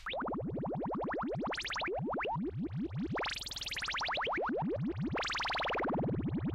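Electronic outro music: a synthesizer playing a fast run of short rising pitch sweeps, with a bigger swell about three seconds in and another near the end.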